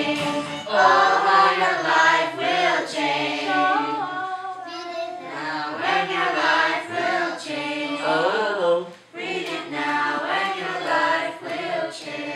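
A group of children singing a song together, with a brief break about nine seconds in.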